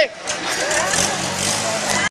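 The engine of a 1951 Jeep running steadily just after the vehicle has been reassembled, with faint voices from a crowd over it.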